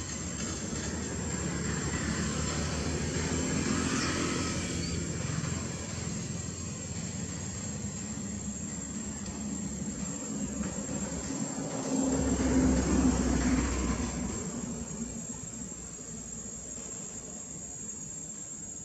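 Engine noise of something passing, rising and fading twice, louder and deeper the second time about twelve seconds in, over a steady high insect trill.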